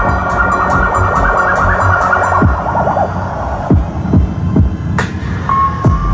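Live concert music played over an arena PA and heard through a phone microphone. A warbling, siren-like synth over heavy bass fades out about three seconds in. Then come several falling bass sweeps and a sharp hit, and a steady synth tone comes in near the end.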